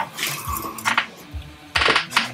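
Short sniffs as whiskey is nosed from tasting glasses, with a stronger sniff near the end, and a light clink of glass just before a second in. Faint background music runs underneath.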